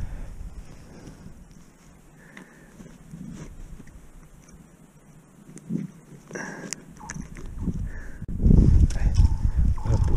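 Faint clicks and rustles of gloved hands handling a freshly caught perch at the ice hole. About eight seconds in, a loud low rumble of wind on the microphone sets in.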